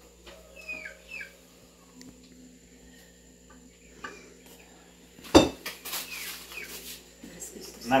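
A metal serving spoon scraping and clinking in a metal bowl of rice as food is dished out, with one sharp clink a little past halfway.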